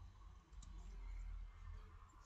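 A faint computer mouse click over a low, steady hum.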